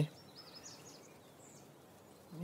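Quiet outdoor ambience with a few faint, high bird chirps, mostly in the first second.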